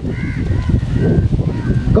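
Wind rumbling on an outdoor microphone: a dense, irregular low rumble with no speech over it.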